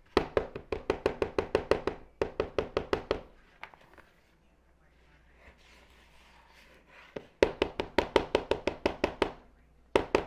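Electric hand mixer's beaters knocking rapidly against a plastic mixing bowl as cream cheese and sugar are blended. The knocks come about eight a second in three bursts of one to two seconds, with a lull of about four seconds in the middle.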